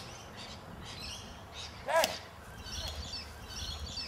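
Small birds twittering faintly in the background. There is one brief sharp pitched sound about halfway through.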